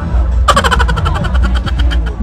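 Loud fairground din. About half a second in, a rapid rattle of sharp clicks, roughly ten a second, starts and runs for over a second above a constant low rumble.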